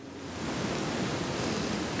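A steady, even hiss of background noise that grows gradually louder through the pause.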